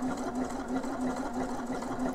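Elna eXperience 450 computerized sewing machine running steadily, stitching the bartack of an automatic buttonhole.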